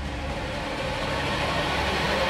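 A rushing swell of noise, a sound-design riser that builds slowly over the two seconds.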